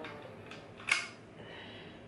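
A single short click about a second in, from handling the adjustment knob at the top of a hooded dryer's stand pole as it is loosened by hand, over faint room noise.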